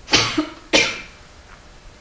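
A person coughing, about three sharp coughs in quick succession within the first second.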